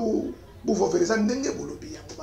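A man's voice: two spoken phrases with drawn-out vowels, the second starting less than a second in.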